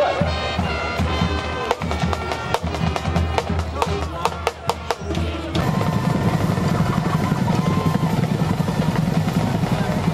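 Band music with a run of sharp snare and bass drum strokes, typical of a school band's drums at a football game. About five and a half seconds in it cuts off abruptly to a steady low rumbling noise.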